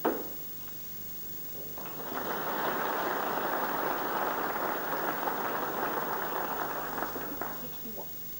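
A sharp click of snooker balls from a shot at the start, then audience applause that swells about two seconds in, holds for around five seconds and dies away near the end.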